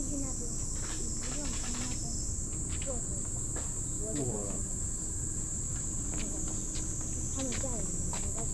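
Steady, high-pitched chorus of insects buzzing without a break in woodland, with faint distant voices and a few light clicks underneath.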